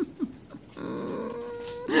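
A Chihuahua puppy gives one steady whine, held at the same pitch for about a second, starting a little under a second in.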